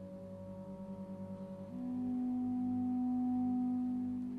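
Clarinet and string orchestra playing softly and slowly: a quiet pulsing low note, then about two seconds in the clarinet comes in with a louder, steady held low note.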